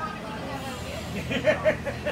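A man laughing, a quick run of short laughs about a second and a half in, over a low steady rumble.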